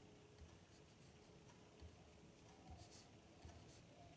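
Near silence: room tone with a few faint clicks and rustles.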